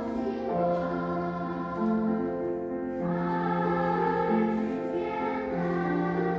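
Children's choir singing in several parts, moving slowly through long held chords, with a new chord about every two and a half seconds.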